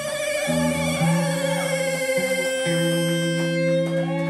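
Live rock band playing: a held, wavering high tone rings over low bass guitar notes that come in about half a second in, with electric guitar.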